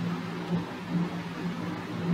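Steady low hum with faint hiss in the background.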